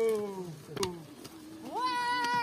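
Several voices chanting in long sliding calls: a sung phrase slides down and fades out in the first second, a short knock comes just before the middle, and a voice rises into a new held note near the end.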